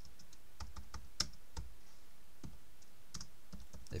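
Typing on a computer keyboard: irregular keystrokes, with one sharper key strike about a second in.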